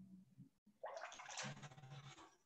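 A brief watery swishing noise, about a second long, starting just before the middle, over a faint low hum.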